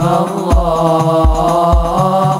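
Hadroh ensemble performing: male voices singing an Arabic sholawat together in long, held lines over rebana frame drums, with a deep drum stroke roughly every half second.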